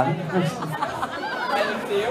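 Several voices talking at once over the stage sound system, overlapping chatter between songs.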